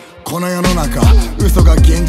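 Hip hop track with a rapped vocal. After a short break at the very start, a deep bass comes in about half a second in, with notes that slide down in pitch under the vocal.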